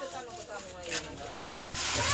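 Faint, indistinct voices in the background over street noise, with a louder rush of noise starting near the end.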